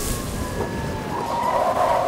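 Storm sound effects of a truck skidding and sliding sideways: a slowly falling whine over rushing noise, which thickens after about a second.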